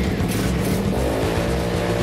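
Small motorcycle engine running fast, spinning the arm wheel of a homemade cake-eating machine, with music underneath.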